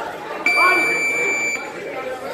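Boxing gym round-timer buzzer sounding one long, steady high-pitched tone of a little over a second, marking the end of a sparring round.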